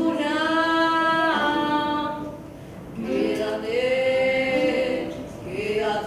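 Women's voices singing long held notes in phrases, with a short lull about two seconds in before the next phrase slides up and back down.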